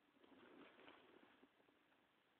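A faint bird call, starting just after the beginning and lasting about a second.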